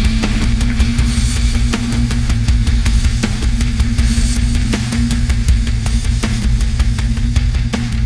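AI-generated heavy metal track from SoundGen: distorted electric guitars and heavy bass over drums keeping a fast, even beat of several hits a second.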